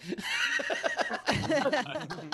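People laughing, with a high-pitched laugh in quick, repeated pulses.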